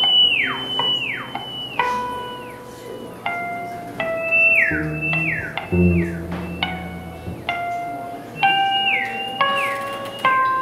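Free improvised music: a theremin holds a high pitch and swoops down again and again, over plucked acoustic guitar notes that ring out, with two low notes around the middle.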